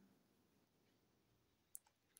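Near silence: room tone, with one faint sharp click near the end.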